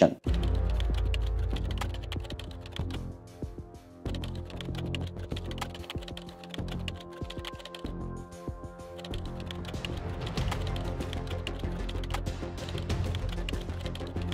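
Rapid keyboard-typing clicks, a typing sound effect for text being typed onto the screen, over background music with a steady bass line.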